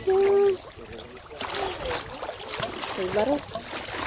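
Small waves slapping and lapping against shoreline granite rocks, with gusty wind on the microphone. It opens with the end of a child's long, high call, and a short voice sound comes near the end.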